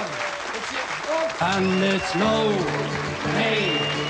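Pub audience applauding, with voices, between songs; about a second and a half in, the Irish folk band's instruments start up with steady held notes.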